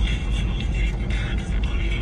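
Music playing on an SUV's sound system, heard inside the cabin, with a steady low rumble underneath.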